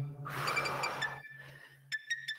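A man's hard exhale during the exercise, a breathy hiss of about a second, over faint background music with a low, repeating bass note.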